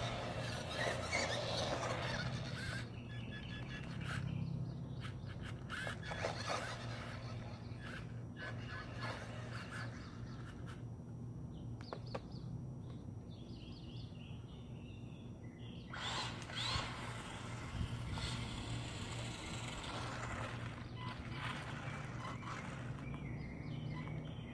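Small electric RC trucks driving in over gravelly asphalt, with stretches of tyre and motor noise early on and again about two-thirds of the way through. Scattered clicks of grit and short bird chirps sit over a steady low hum.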